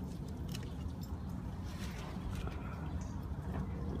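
Strawberry leaves and stems rustling as hands push through the plant's foliage, a scatter of faint, short crackles over a steady low background hum.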